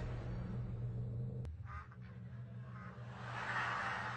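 A duck quacking faintly, a couple of short calls about two seconds in, over a low steady hum.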